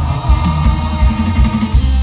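A live band playing an instrumental passage through a large outdoor concert sound system, with a heavy, steady kick drum and bass under drum kit and guitar, heard loud from among the audience.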